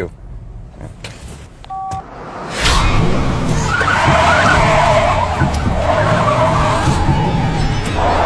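Car tyres screeching in a long skid under hard braking, starting about two and a half seconds in, with a wavering squeal that holds for about five seconds.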